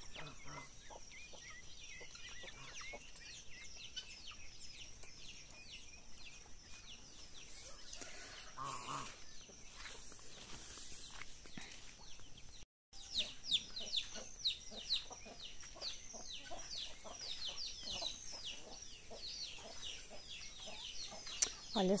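Farmyard chickens clucking amid a dawn chorus of small birds chirping rapidly, with a steady high insect-like whine underneath. The sound cuts out completely for a moment about halfway through.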